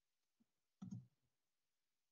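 A faint click on the presenter's computer, advancing the presentation slide. It comes as a quick double click about a second in, with a softer tick just before it, against near silence.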